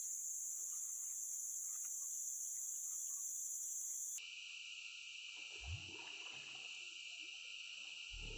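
Steady, high-pitched drone of a tropical forest insect chorus, which changes abruptly about four seconds in to a lower-pitched drone. A single soft low thump sounds near the middle.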